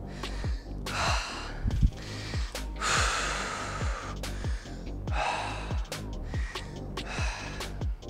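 A man breathing hard and gasping, out of breath and recovering after a set of an exercise. Background music with a steady beat plays underneath.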